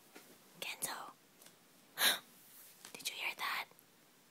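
A person whispering in three short breathy phrases, the middle one the loudest.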